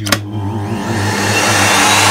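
A vacuum cleaner switched on with a click of its power button, its motor spinning up into a rushing whoosh that grows louder over the first second and then runs steadily.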